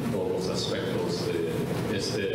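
A man speaking steadily into a microphone.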